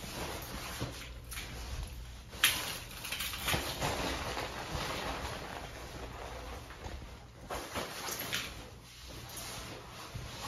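Handling noise of tools and the camera being moved about: a sharp click about two and a half seconds in, then irregular rustling and light knocks.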